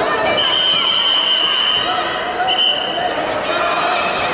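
Referee's whistle: one long blast of about a second and a half, then a short one, over crowd chatter. It is the referee stopping the action as the wrestlers go down to the mat.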